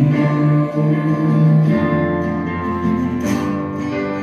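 Guitar strumming held chords, with sustained lower notes beneath; the chord changes a little under two seconds in.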